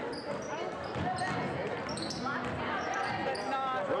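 Basketball game on a hardwood gym court: a ball bouncing and short high sneaker squeaks, with spectators' shouting voices echoing in the hall.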